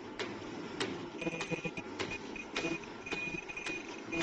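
Flat face-mask making machine running, its mechanism clicking in a steady rhythm about every 0.6 s, with short high whines coming and going in the second half.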